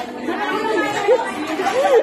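Crowd chatter: many people talking at once, their voices overlapping into an indistinct murmur of conversation.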